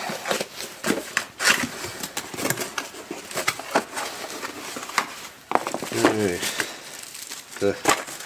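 A cardboard box being pulled open and its plastic-wrapped contents handled: a run of crinkling, crackling and scraping with occasional sharp tears.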